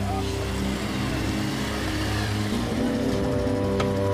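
Motorcycle engine running as the bike rides up and slows to a stop, with background music playing over it.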